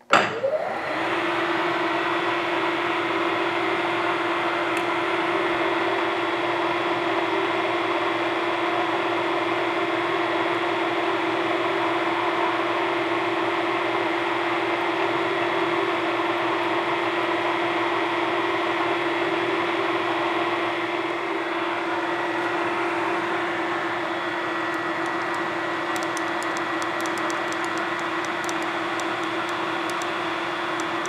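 Electric shop machinery running steadily: a constant motor hum with a steady whine over a rushing hiss, starting abruptly. Faint rapid ticking joins in over the last few seconds.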